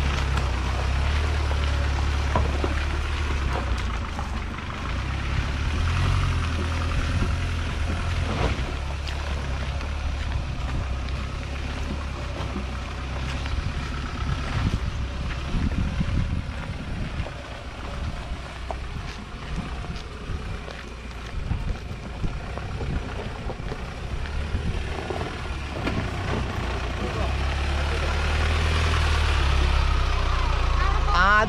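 Mahindra Thar CRDe diesel engine running at low revs as the 4x4 crawls over a rocky dirt trail, a steady low rumble that grows louder near the end as the vehicle comes close.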